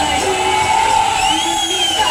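A voice lets out one long, held yell over loud stage-show music.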